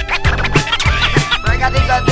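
Hip hop instrumental beat with turntable scratching: short back-and-forth scratches glide up and down in pitch over a steady kick-drum pattern, with no rapping.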